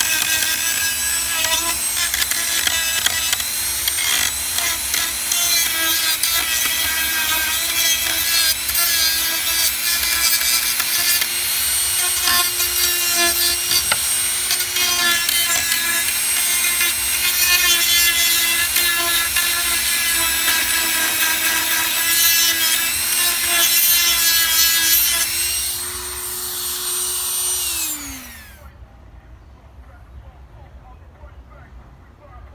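Corded handheld rotary tool with a sanding drum running steadily with a high whine while it sands the edge of a plywood cutout. Near the end it is switched off and the whine falls in pitch as the motor spins down.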